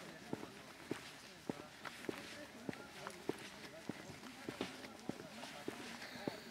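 Footsteps on concrete at a steady walking pace, about one or two sharp steps a second.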